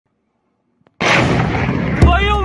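Missile explosion heard outdoors: near silence, then a sudden loud blast about a second in that carries on as a dense, slowly fading rumble.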